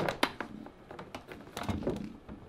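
Light plastic clicks and handling noise of an electric hot-water pot's power plug being fitted into the socket at the base of the pot: two sharp clicks near the start, a few softer ones near the end.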